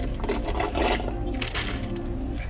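Steady low car-cabin rumble, with light scraping and knocking as a foam drink cup and its plastic straw are handled.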